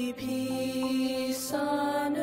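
Young female voices singing a slow hymn in close harmony, holding long notes. There is a short break just after the start, and the notes move to a new chord about one and a half seconds in.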